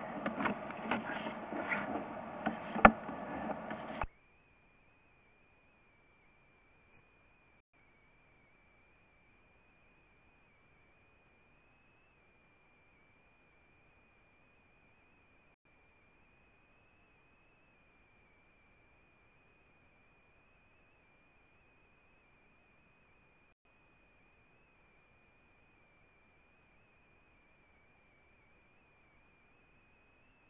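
Faint background noise with a few clicks for about four seconds, then it cuts out to near silence, leaving only a faint, steady, high-pitched electronic whine.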